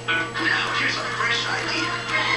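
Television playing in the room: a commercial's music with a voice over it.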